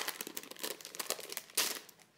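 A clear plastic die package crinkling and crackling as it is handled, a quick run of small clicks with a sharp one at the start and a louder crackle about one and a half seconds in.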